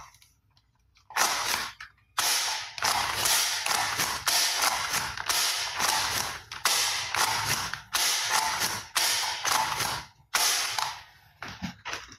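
Plastic toy pump-action shotgun's mechanism being worked over and over, making a run of rasping ratchet-like plastic clacks, about one and a half a second, starting about a second in and stopping near the end.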